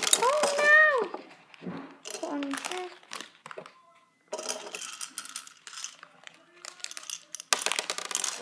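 A girl's drawn-out exclamations over light clicking and crinkling as small hard candies are tipped from a plastic wrapper into a plastic toy candy dispenser.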